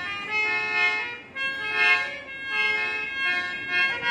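Hand-pumped harmonium playing a melody of held reedy notes, changing pitch about every half second.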